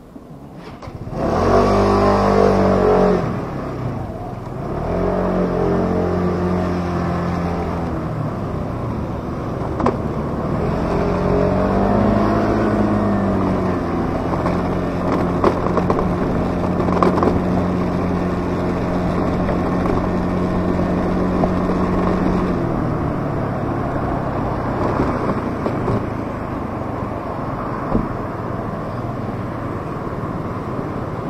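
A motor vehicle's engine comes in loudly about a second in and revs up as the vehicle pulls away, its pitch climbing and shifting. It then runs at a steady pitch while driving and eases off about three-quarters of the way through.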